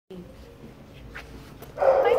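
A dog barks loudly near the end, after a second and a half of low background noise.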